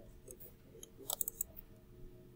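A quick run of five or six light, sharp clicks about a second in, over faint steady room hum.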